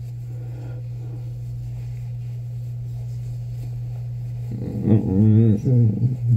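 A steady low hum throughout, with a man's voice making a wordless, wavering hum for about two seconds near the end.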